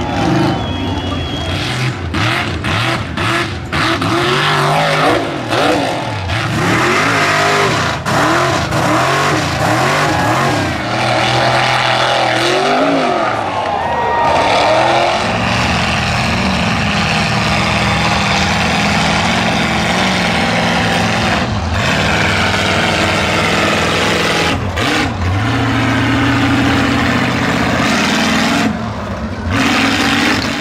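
Lifted mud-bog trucks' engines revving hard as they drive through a deep mud pit. The engine pitch swoops up and down over and over for the first half, then holds steadier and high under load.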